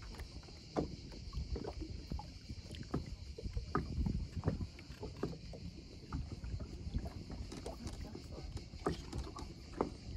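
Water lapping and splashing against the side of a bass boat, over a low steady rumble, with scattered small knocks and splashes.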